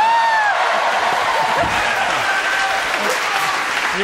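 Studio audience applauding after a point in a mini-tennis game, with a short exclamation from a voice at the start.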